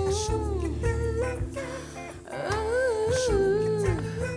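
A woman singing a wordless, hummed vocal line in long held notes that bend up and down, over a band accompaniment with a steady bass; the longest phrase comes in the second half.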